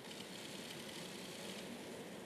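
Faint, steady background noise of a large hall, with no distinct sound event.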